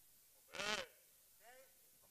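A person's wordless vocal cries, caveman-style calls from an actor: a loud one about half a second in, its pitch bending up and back down, and a shorter, fainter one about a second and a half in.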